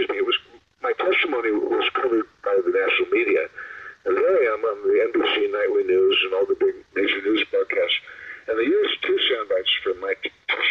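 Speech only: a person talking continuously with short pauses, the voice sounding thin, like a phone or radio line.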